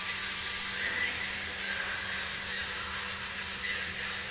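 Ice rink ambience during a stoppage in play, a steady noisy hiss with faint music in the background and a constant low electrical hum.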